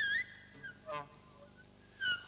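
Reed instrument playing short, high, separate notes in free improvisation: a note sliding upward at the start (the loudest), a brief note about half a second in, a lower squawk around the middle, and a new high note starting at the very end.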